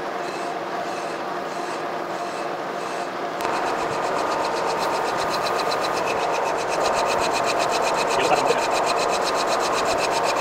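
Horizontal boring mill boring out a steam locomotive stoker engine's cylinder: a steady machine whir, which a few seconds in turns into a rapid, even ticking from the cut played back sped up.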